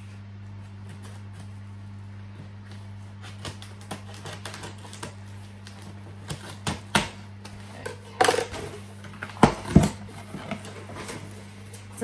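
Scissors cutting along the packing tape of a cardboard box, a run of small clicks and scrapes, then the cardboard flaps being pulled open with several louder knocks and rustles in the later part. A steady low hum runs underneath.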